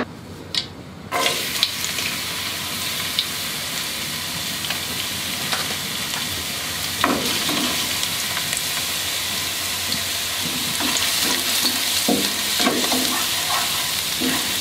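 Minced garlic sizzling in hot oil in a non-stick pan: a steady sizzle that starts suddenly about a second in. A plastic spatula stirs and scrapes against the pan, more often near the end.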